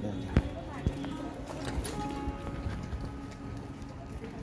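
Footsteps of sandals on a concrete street at a walking pace, sharp slaps a little under a second apart, over faint background music and voices.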